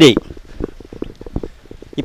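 A man's voice ends a word just after the start, then a pause filled with faint, irregular low thumps and clicks.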